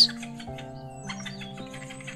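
Soft sustained background music with a quick run of short, high chirping squeaks over it: a sound effect for badger cubs playing and giggling.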